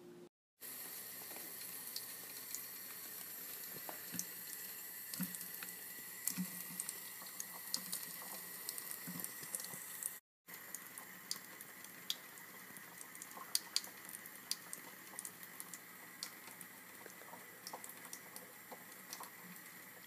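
Water running steadily into a sink, with scattered small splashes and clicks as a green-cheeked conure bathes in it. The sound breaks off briefly about ten seconds in.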